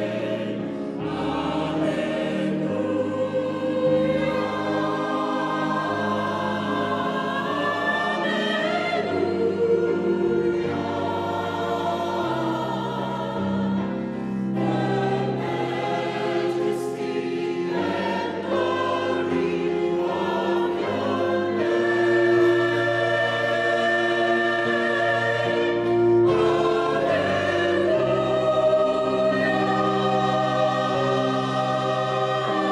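Mixed choir of men's and women's voices singing in harmony, in long held phrases broken by short pauses.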